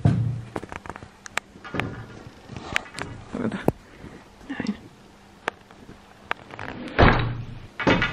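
Wooden floor loom being worked: dull wooden thunks as the beater packs the weft into the rug, with sharp clicks and knocks from the loom's wooden parts between them. The heaviest thumps come at the very start and about seven seconds in.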